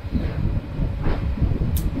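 Uneven low rumble inside the cabin of a Mini 6.50 racing sailboat under way at sea, the noise of the hull moving through the water.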